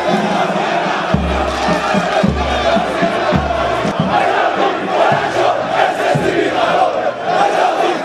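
Large crowd of men chanting and shouting together, a dense, continuous mass of voices, with low rumbles on the microphone in the first half.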